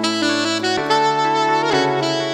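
Saxophone playing a slow melody over a backing of sustained bass and chords, in an instrumental version of a pop song.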